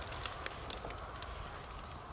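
Quiet low rumble of wind on the microphone, with scattered faint clicks and rustles.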